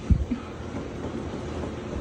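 A single dull low thump just after the start, followed by a steady low rumble.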